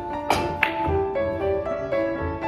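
Carom billiard shot: a sharp click of the cue tip striking the cue ball, then about a third of a second later a second sharp click of ball hitting ball, over background piano music.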